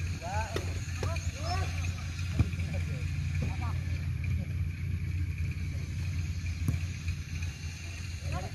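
Players shouting and calling across a grass football pitch, short rising-and-falling shouts mostly in the first half, over a steady low rumble. Two sharp knocks, one about two seconds in and one near the end.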